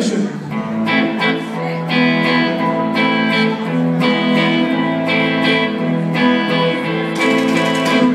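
Live band music led by electric guitar chords struck about once a second and left ringing over a steady low note.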